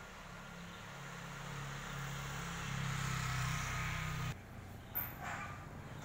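A low mechanical hum grows louder for about four seconds and then cuts off suddenly. A single sharp click follows.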